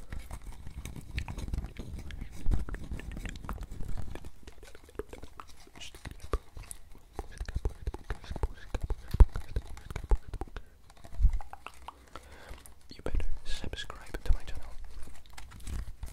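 Fingers tapping, scratching and handling a camera lens held right up to a microphone: quick irregular clicks and soft knocks, in louder bursts now and then, with breathy whispered mouth sounds.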